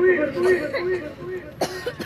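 A man's voice over a microphone trails off into quieter speech, then a short cough comes through the microphone near the end.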